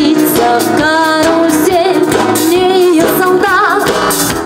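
A woman singing with vibrato, backed by a live band of electric guitars and drum kit playing a steady beat.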